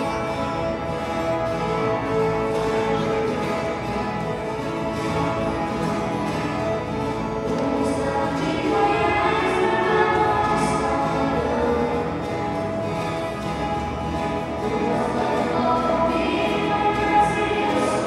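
An ensemble of ten-string violas caipiras playing a brisk pagode rhythm, with a group of voices singing along in unison.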